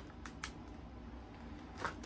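Quiet room with two faint light clicks, about a quarter and half a second in, from a plastic wax-melt clamshell being handled at the nose.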